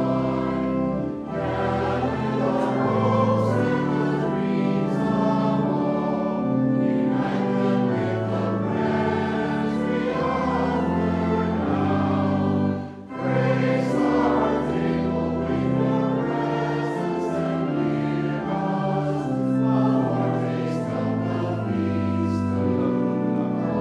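A congregation singing a hymn together, accompanied by a pipe organ holding sustained chords, with a brief break between lines about halfway through.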